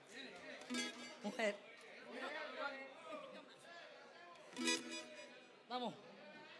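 Background voices chattering, with faint plucked-string music from an acoustic guitar or cuatro underneath.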